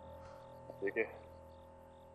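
Crickets chirping in a steady, evenly repeating rhythm, faint, over a soft held music tone.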